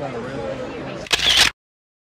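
A camera shutter sound about a second in: a short, loud click-burst over background crowd chatter, followed by a sudden cut to silence.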